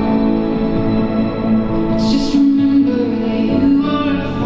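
A recorded song playing: a solo voice sings over sustained instrumental accompaniment, moving on to a new lyric line about two seconds in.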